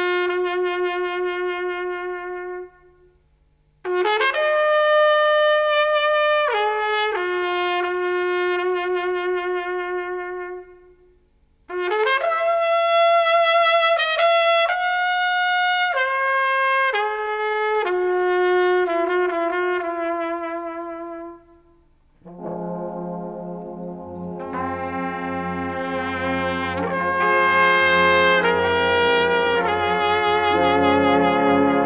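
Serbian brass band music: a lone lead horn plays slow, free-timed melodic phrases broken by short pauses. About three-quarters of the way in, the full band comes in underneath with low brass.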